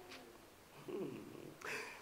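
A man's soft, brief hum, a closed-mouth "hmm", about a second in, followed by a quick intake of breath just before he speaks again.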